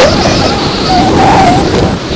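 Wind rushing over a body-worn camera's microphone at downhill skiing speed, with the skis running on the snow.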